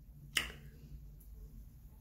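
A single sharp click about a third of a second in, over a faint low hum.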